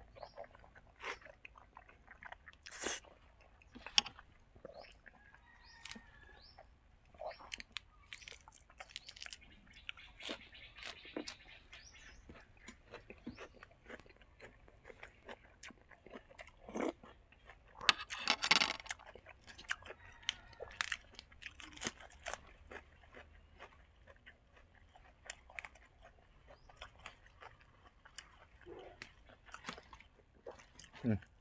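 Close-miked mouth sounds of a man chewing braised pork leg, with wet smacks and clicks throughout. A louder burst of clicks and crunching comes about two-thirds of the way through.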